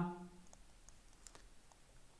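A few faint, scattered clicks of a stylus tapping on a pen tablet during handwriting.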